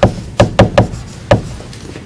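Plastic stylus tapping against a tablet screen while handwriting a word: four short, sharp taps in the first second and a half.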